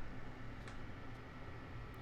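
Ceramic space heater's fan running, a faint steady whir, with two faint ticks partway through.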